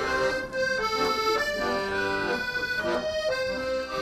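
Guerrini piano accordion played solo: a melody of held notes, changing about every half second.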